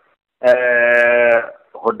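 A man's voice holding one long, level vowel for about a second: a drawn-out syllable in his speech rather than words.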